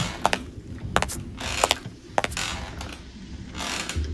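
Irregular sharp mechanical clicks, a few a second, over stretches of rushing noise: a ratcheting mechanism at work.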